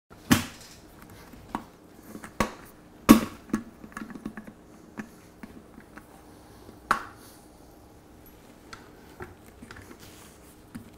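Irregular sharp clicks and knocks of a glass blender jar and its plastic lid being handled and pressed into place on the base, the loudest near the start and about three seconds in, then fainter clicks.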